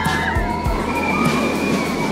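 Background music over the rushing noise of the Manta steel roller coaster train running along its track, with a high held scream from riders near the end.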